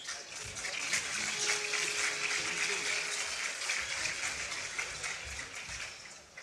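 Audience applause, many hands clapping together, dying away near the end.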